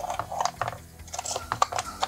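Light, irregular clicks and taps of fingers and small wooden pieces as a wooden puzzle box is handled and probed.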